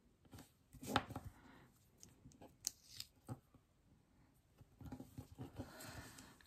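Faint, scattered clicks and rustles of paper and sticker handling: metal tweezers setting a small planner sticker on the page, and fingers pressing and smoothing it down. The loudest tap comes about a second in.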